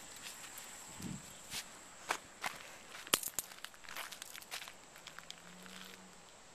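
Footsteps of a person walking over grass and dirt: irregular steps and scuffs, some sharper than others.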